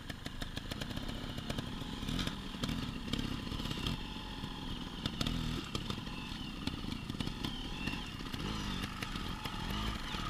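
Off-road motorbike engine running and revving up and down while being ridden, with knocks and rattles throughout.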